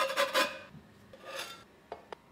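A metal utensil scraping across a frying pan as souffle pancakes are lifted out, with a light metallic ring. There is a loud scrape at the start and a second, fainter scrape at about a second and a half, then a short click near the end.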